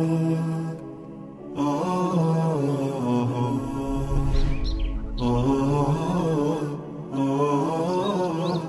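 Closing theme: chant-like singing in long held notes, in phrases broken by short pauses about a second in and near seven seconds, with a few short high rising chirps over it.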